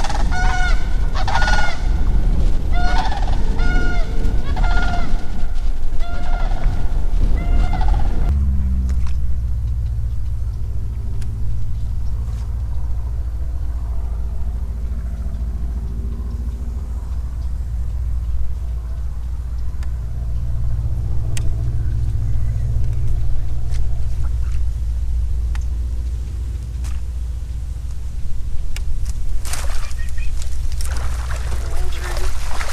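Large birds honking over and over, about one call a second, above a steady low rumble. The calls stop after about eight seconds, and the low rumble carries on alone.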